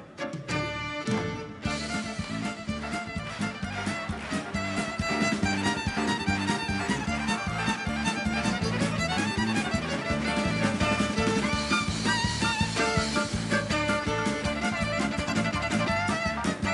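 Lively recorded music with a steady beat, played over the theatre's sound system.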